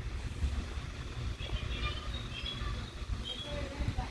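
Quiet low background rumble with a few faint, short high chirps in the middle; no distinct tool or work sounds.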